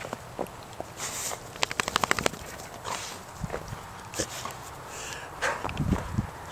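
Footsteps crunching in snow: short crunches about a second apart, with a quick run of crackles about two seconds in and a low thump near the end.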